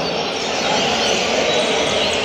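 Steady background din with faint, high chirping from caged songbirds over it.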